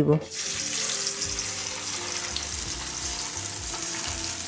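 Turmeric-and-salt-rubbed pabda fish sizzling as they are laid one by one into hot mustard oil in a frying pan. The sizzle starts suddenly a moment in and then holds steady.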